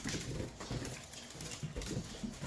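A small Yorkshire terrier scampering on a hardwood floor after a balloon: quick, irregular clicking and pattering of claws and paws, with a few soft knocks mixed in.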